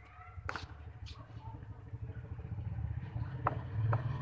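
A sharp crack about half a second in, a cricket bat striking the ball, followed by a softer knock, then more short knocks near the end, over a steady low rumble.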